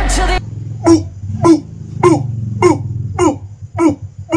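A man's voice giving six short, loud cries in a row, each falling in pitch, a little over half a second apart, just after music cuts off about half a second in.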